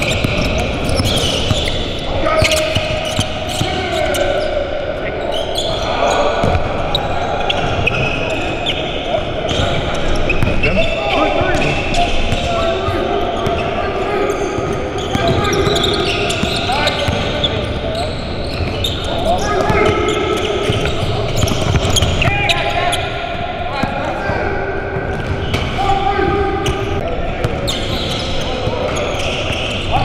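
Basketballs bouncing on a hardwood gym floor during play, with indistinct players' voices echoing in a large gym.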